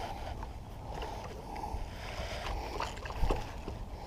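Steady low rumble with faint water movement as a hooked catfish thrashes at the surface beside a boat, and a few small knocks.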